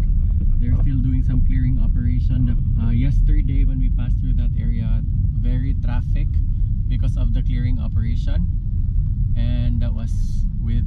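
Steady low engine and road rumble of a car heard from inside the cabin while driving slowly in traffic, with voices talking over it.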